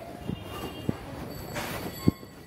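Footsteps on a wet lane over steady street background noise, with a brief high hiss near the end.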